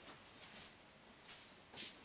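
Quiet room with faint handling and shuffling sounds as a person fetches and picks up a spare RC truck wheel and tyre; a short hiss near the end.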